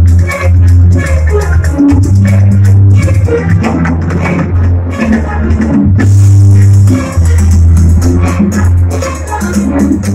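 Symphony orchestra playing live and loud, strings to the fore, over a strong low bass and a steady rhythmic pulse.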